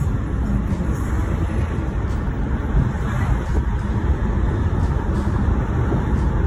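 Steady low rumble of a moving car's tyres and engine, heard from inside the cabin.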